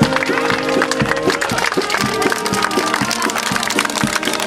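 Live band music playing outdoors, with a crowd clapping along in many sharp claps.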